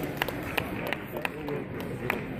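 Sparse hand claps, about three a second, over background voices of the crowd as a grappling match ends.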